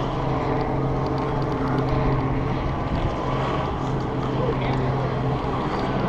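Rope running fast through a handled rappel descender during a quick descent: a steady low hum over a rushing noise, with the hum stopping about five seconds in.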